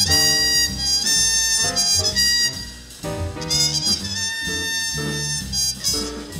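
Muted trumpet playing a jazz solo in long held notes, with a short break about three seconds in, over a jazz rhythm section of piano, upright bass and drums.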